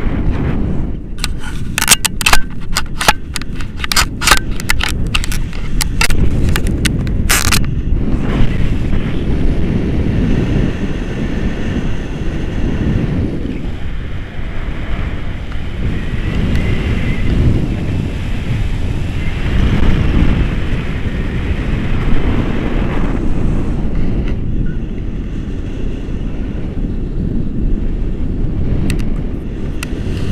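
Airflow buffeting the camera microphone during a tandem paraglider flight, a loud continuous low rumble that swells and eases. A rapid series of sharp crackles sounds over the wind in the first several seconds.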